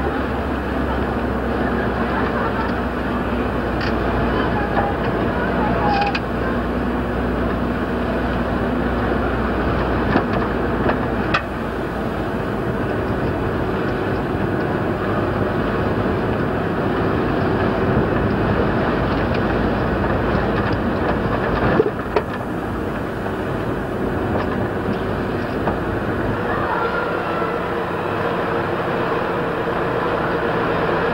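Steady outdoor hiss and rumble with a low hum underneath and faint voices of spectators, as picked up by an old video camera's microphone. Sharp clicks come about 11 and 22 seconds in.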